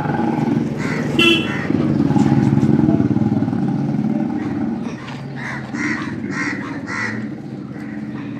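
A motor vehicle's engine running close by on the street, loudest about two to three seconds in and then fading away.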